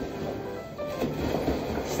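Faint background music over a low, steady rumbling noise.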